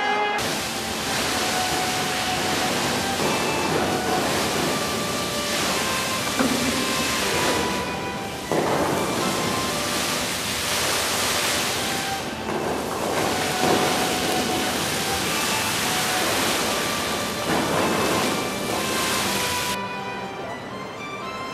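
Hot-spring geyser (the Vřídlo) spouting inside its glass hall: a steady rush of water spray that starts about half a second in and surges now and then.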